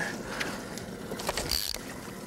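Scattered clicks and knocks of fishing rods and reels being handled aboard a small boat, with a short hiss about one and a half seconds in.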